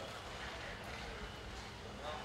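Faint distant voices over a steady low outdoor rumble and hiss.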